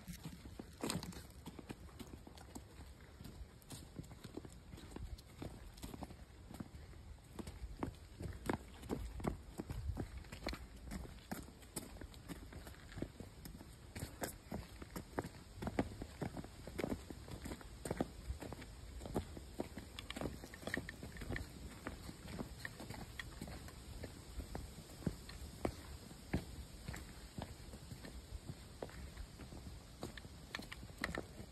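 Footsteps on a hiking trail: irregular knocks and scuffs over a low rumble.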